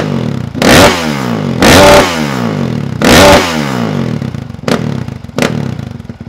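Honda CRF four-stroke dirt bike engine, running without its Yoshimura exhaust, revved hard three times, each rev winding back down to idle, then blipped twice more briefly near the end.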